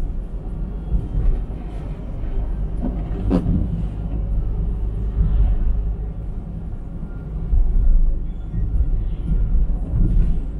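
Steady low rumble of a car driving on the road, heard from inside the cabin, with a brief rising and falling sweep about three and a half seconds in.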